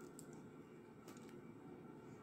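Faint crackling of a homemade bread's baked crust pressed between fingers: a few soft clicks, one shortly after the start and a small cluster about a second in, over near silence.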